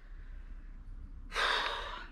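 A person's short breathy exhale, like a sigh, about one and a half seconds in, fading over about half a second.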